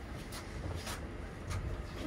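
Low steady rumble of a ship's bridge, with a few soft rustles and clicks.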